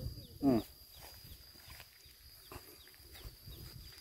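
A man's short closed-mouth 'mm' about half a second in. Then quiet outdoor ambience with faint repeated short high chirps and a steady thin high whine over a low rumble.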